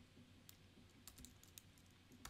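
Faint computer keyboard typing: a few soft, scattered key clicks.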